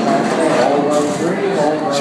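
Several people's voices talking over one another, with laughter starting at the very end.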